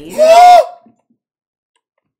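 Speech only: one loud, short spoken word or exclamation in the first half second, then silence.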